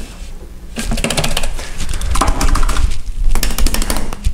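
A rapid series of light clicks and knocks from handling, thickest in the second half, over low dull thuds.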